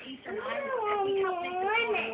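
A toddler's drawn-out, high-pitched whine of protest: one long wavering vocal sound.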